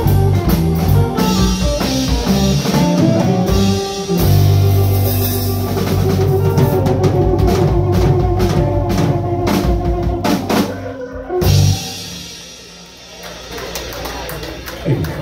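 Live blues band of electric guitars, bass, drum kit and keyboards playing a song. A held low note and a drum flurry build to a final hit about eleven and a half seconds in, where the band stops and the level drops.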